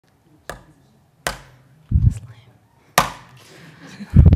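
Three sharp knocks, each with a short ring after it, and a dull low thump between the second and third: handling noise on a lectern microphone.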